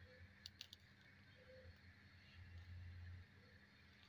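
Near silence: faint room tone with a few tiny clicks in the first second and a faint low hum near the middle.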